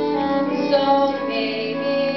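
A girl singing a slow, sustained melody over instrumental accompaniment, holding long notes.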